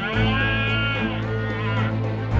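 A red deer stag roaring, its rutting call, in one long call and then a shorter one. It sounds over background music with plucked guitar.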